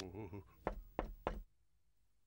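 Three knocks on a door, spaced about a third of a second apart, with quiet after them.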